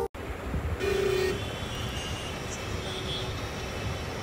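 Road noise heard from inside a moving car: a steady low engine and tyre rumble, with a short vehicle horn toot about a second in.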